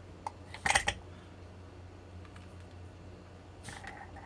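Handling clicks and a short clatter from a small bench vise and a brass padlock being picked up and fitted together, with the loudest clatter about three-quarters of a second in and a few light clicks near the end.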